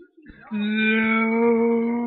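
A person's voice holding one long, loud, steady note, starting about half a second in.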